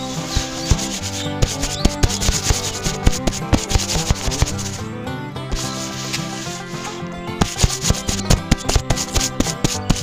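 Sandy grains poured from a small metal cup into a tin drum, a grainy rushing full of small ticks, in two pours: from about a second and a half in to five seconds, and again from about seven and a half seconds on. Background music plays throughout.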